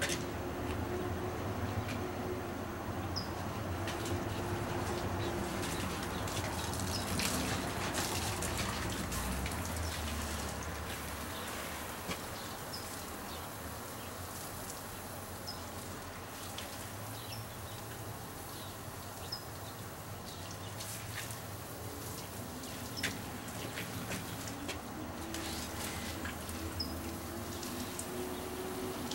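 Water spraying from a garden hose onto succulent leaves and soil, a steady spray throughout, with a small bird chirping now and then.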